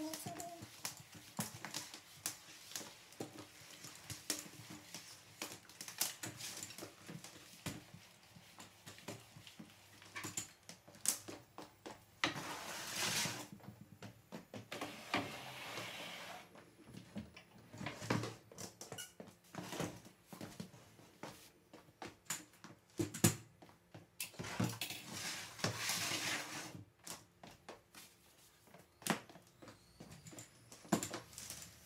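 Corded electric steam mop being worked over a laminate floor: many light knocks and clicks as the mop head bumps and shifts, with three longer spells of sliding, rushing noise, about 12, 15 and 25 seconds in.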